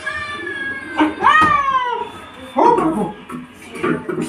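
High-pitched, cat-like meowing cries: one held in the first second, a second about a second in that rises and then falls, then a lower vocal sound near the middle.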